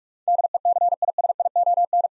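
Morse code sent as a single steady beep tone at 45 words per minute, a quick run of dots and dashes starting about a quarter second in: the first sending of the practice word 'decision'.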